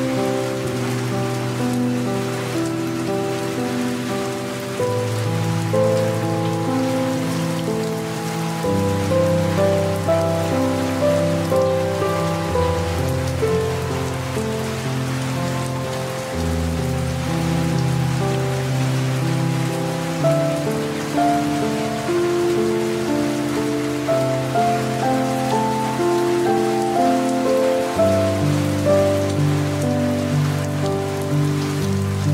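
Steady rain with soft piano music underneath; the music's held low chords change every few seconds.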